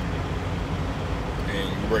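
Steady low engine rumble of a parked truck, heard inside the cab. A man's voice comes back near the end.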